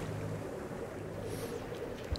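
Sailboat underway on a calm sea: a steady low hum under an even wash of water and wind noise.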